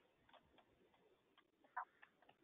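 Near silence with a few faint, irregular clicks, the clearest one near the end.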